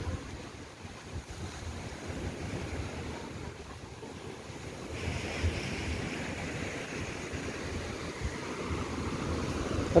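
Sea surf washing onto a sandy beach, mixed with wind buffeting the microphone; the surf grows a little louder about halfway through.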